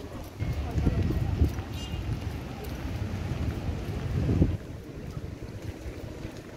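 Wind buffeting the microphone in gusts, a low rumble that eases off sharply about four and a half seconds in.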